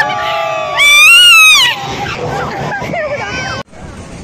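Riders on a crowded fairground ride screaming and shouting over one another, with one loud, long, high scream about a second in. The sound cuts off suddenly near the end.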